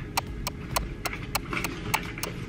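Ticking sound effect: sharp, evenly spaced clicks, about three a second.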